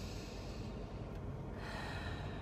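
A woman taking slow, deep breaths as a calming exercise: one long breath through pursed lips that ends less than a second in, then the next breath starting near the end.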